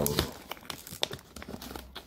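Plastic snack bag crinkling as it is handled, with a few scattered crackles.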